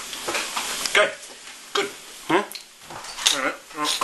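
Short, broken voice sounds and murmurs with no clear words, and a spoken "right" near the end.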